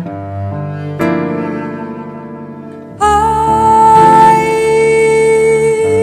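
Instrumental introduction played by bowed strings, cello prominent, in slow sustained chords. A new chord enters about a second in, and about three seconds in the strings swell much louder under a long held high note.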